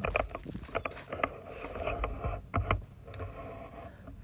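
Footsteps crunching over gravel and dry leaves: a run of irregular crunches and dull thumps with rustling between them.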